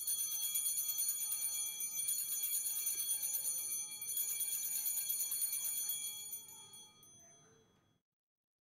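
Altar bells shaken continuously in a rapid, bright jingle for about six seconds, then dying away, rung at the elevation of the host during the consecration.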